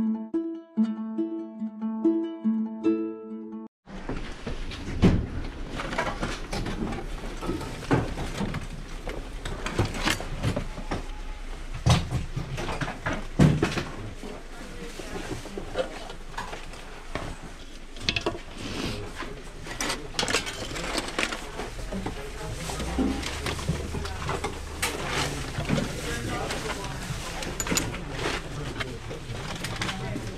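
Short plucked-string intro music that cuts off about four seconds in, followed by hands rummaging through a pile of small tools and metal hardware: scattered clicks, clinks and knocks of objects being moved and picked up, over room noise.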